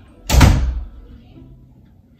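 An interior bathroom door is shut hard once: a single loud bang about a third of a second in that dies away within about half a second.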